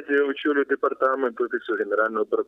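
A man speaking over a telephone line, the voice thin and narrow-band as on a phone call.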